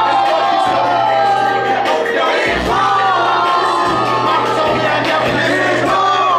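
Loud hip-hop music at a live show: a beat with a vocal over it, and crowd noise.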